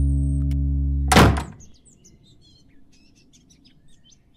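A held music drone ends about a second in with one loud thunk of a wooden door being slammed shut. Faint birds chirp after it.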